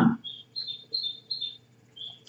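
A bird chirping: about five short, high chirps spread over two seconds.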